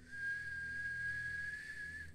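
One long whistled note, held steady for about two seconds and rising slightly just before it stops.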